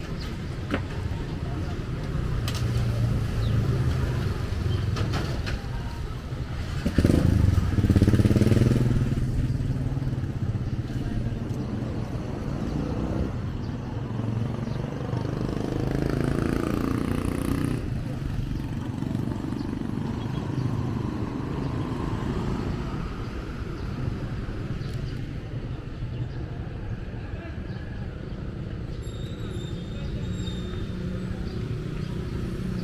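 Road traffic passing along a city street, a steady low rumble of engines and tyres. About seven seconds in a motorcycle passes close by, the loudest sound, its engine note bending in pitch as it goes.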